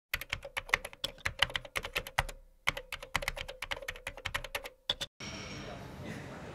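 Rapid, irregular clicking like keys being typed on a keyboard, with a short pause about two seconds in. It stops abruptly just after five seconds, giving way to quiet room tone.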